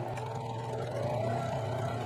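Electric sewing machine running fast and steady, stitching a twin-needle hem into a t-shirt sleeve: a constant motor hum with the rapid patter of the needles.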